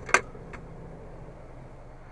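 A plastic dash-top storage lid being pressed shut: a sharp click as it latches just after the start, a fainter click about half a second in, then only a quiet steady background.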